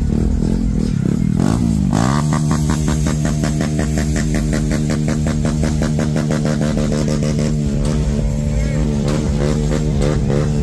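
A vehicle engine running steadily with an even, pulsing note. Its pitch dips and rises about two seconds in, and it wavers more near the end.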